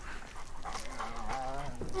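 A dog whining and yelping in a series of short, wavering high-pitched calls.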